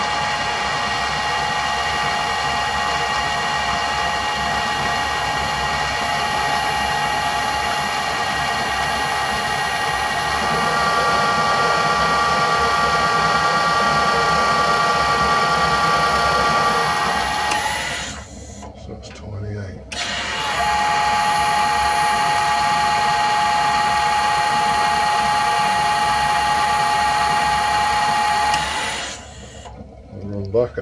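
Metal lathe running under power with its gears and leadscrew driving a thread-cutting pass on an M40x1.5 thread: a steady gear whine made of several tones, with a higher tone joining about ten seconds in. It stops about 18 seconds in, starts again two seconds later and stops shortly before the end.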